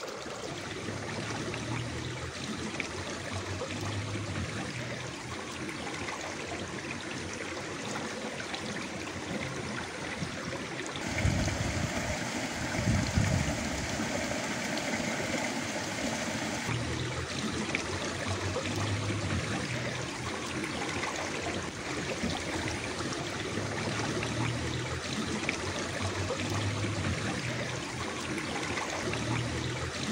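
Water running in a small stream or ditch, a steady trickling flow with no break. About a third of the way through it grows louder and fuller for several seconds, then settles back.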